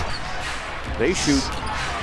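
A basketball being dribbled on a hardwood court, heard through a game broadcast over arena noise, with a brief snatch of speech about a second in.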